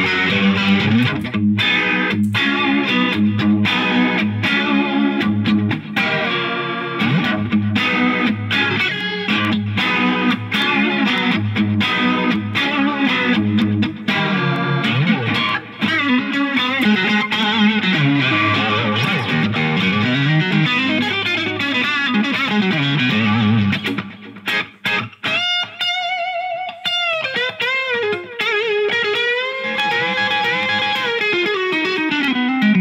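Electric guitar, a Fender American Elite Telecaster on its Bootstrap Pretzel neck pickup, played through a Line 6 Helix on a Plexi amp model: a continuous run of riffs and chords. Near the end come a few sustained notes with vibrato.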